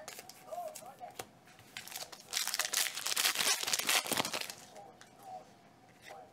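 Foil wrapper of a 2018 Select football card pack being torn open and crinkled. The crackling burst starts a little over two seconds in and lasts about two seconds. Light clicks of cards being handled come before it.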